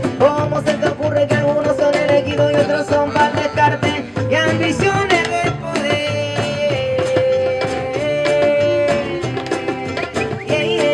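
Acoustic folk band playing an instrumental passage: acoustic guitars, a large drum beaten with a stick keeping a steady beat, and a held melody line carried by long sustained notes that slide between pitches.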